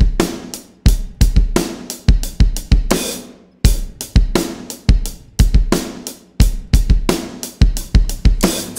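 A rock drum kit playing the song's intro groove alone: bass drum, snare, hi-hat and cymbal hits in a driving, syncopated pattern.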